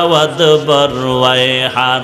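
A man's voice chanting a religious verse in a slow, drawn-out melody, holding long notes with a wavering pitch; one note swells up and falls back about halfway through.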